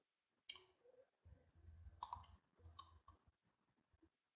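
Faint computer mouse clicks: a single click about half a second in, a quick pair about two seconds in, then a few softer ticks.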